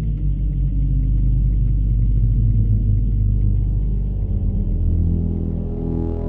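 Low, sustained rumbling drone of a background music score, deep held bass tones with the low notes shifting about four seconds in.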